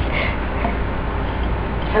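Steady background hiss with a constant low hum and no distinct knocks or taps. A short laugh comes right at the end.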